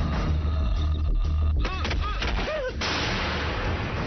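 Gunshots in an action film's dubbed soundtrack, over a low rumble, followed by a sudden bright hiss about three seconds in.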